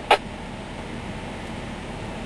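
Steady noise of a vehicle cabin with the engine running, after a short burst from the two-way radio just after the start, typical of a squelch tail as a transmission ends.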